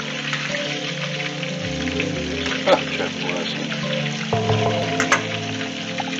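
Pork meatballs sizzling as they fry in shallow oil in a pan, with a couple of sharp clicks from a fork against the pan. Background music with held notes plays over the frying.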